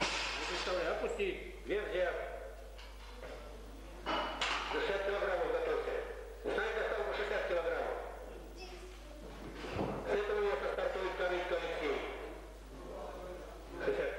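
Men's voices talking and calling out in a gym hall, with the thud of a loaded barbell dropped to the platform after an overhead lift.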